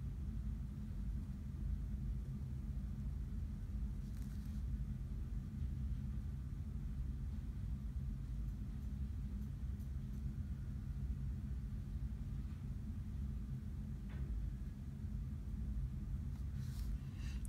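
Steady low background rumble, with a few faint, brief scratches of a fine-tip drawing pen on paper.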